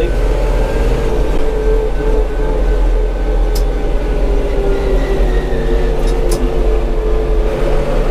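Tümosan 6065 tractor's diesel engine running steadily at road speed, heard from inside the closed cab: a continuous low drone with a held tone above it. A few short clicks sound around the middle.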